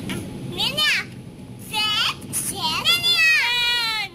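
Young children's high-pitched voices chattering and calling out in a sing-song way, with a quick rising cry about half a second in.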